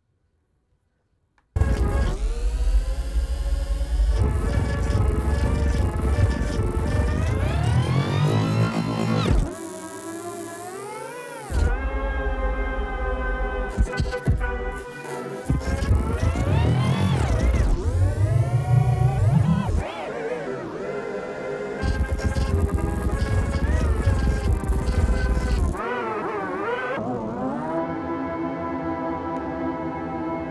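A music sample played through a Max/MSP granular sample processor, its speed, pitch and volume changed continuously by hand movements over a Leap Motion sensor. It starts about a second and a half in, and its pitch slides up and down again and again, with stretches where it drops in volume.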